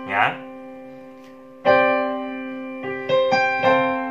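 Piano chords. A held chord dies away, a new chord is struck about a second and a half in and left ringing, and several more notes follow in quick succession near the end. These are suspended chords, a sus4 among them, played over a simple 1–4–1–5 progression.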